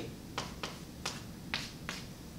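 Chalk on a blackboard: about five short, sharp strokes and taps in two seconds as a letter choice is crossed out.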